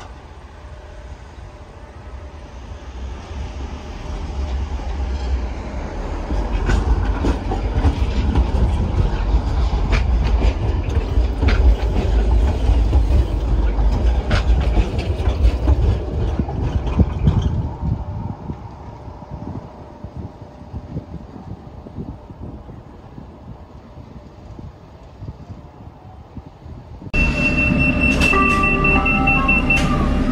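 A Sheffield Supertram tram draws near and passes close by, its wheels rumbling and clicking on the rails, loudest in the middle and dropping away after about 17 seconds. Near the end the sound jumps suddenly to the steady running noise inside a moving vehicle, with a high steady whine.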